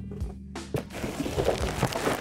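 Background music with sustained bass notes, under a few brief knocks and rustles of a cardboard box being lifted off a plastic-wrapped speaker.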